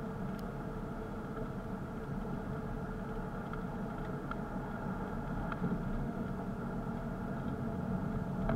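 A car's engine and road noise, heard from inside the cabin while driving: a steady hum with a few faint ticks.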